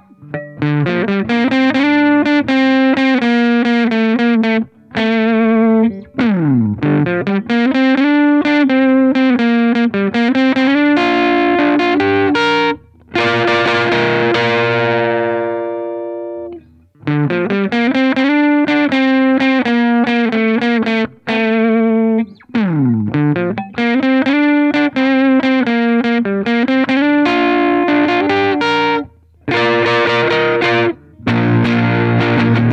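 Electric guitar on its humbuckers played through a Dogman Devices Earth Overdrive pedal: driven riffs and chords in phrases with short breaks, two slides down the neck, and a chord left ringing out near the middle.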